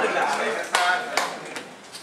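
Indistinct murmured voices among the people in the room, with two sharp taps about half a second apart near the middle.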